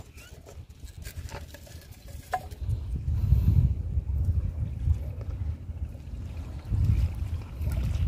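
Low, gusting rumble of wind buffeting the microphone, with a few faint clicks from hands handling a fishing hook and foam bead in the first couple of seconds.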